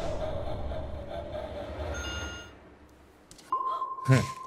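A low, even background rumble with a brief chime-like tone about halfway through. Near the end a single steady high-pitched electronic beep starts and holds.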